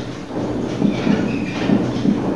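Felt-tip marker scratching across a whiteboard in short strokes as letters are written.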